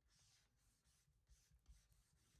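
Near silence: room tone with very faint scratching and a few tiny soft ticks.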